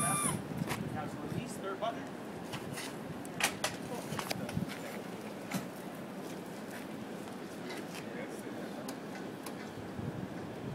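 A Stryker powered stretcher's battery-driven hydraulic motor whining as the plus button is held, cutting off with a slight drop in pitch right at the start. After that come scattered light clicks and knocks from the cot against faint background voices.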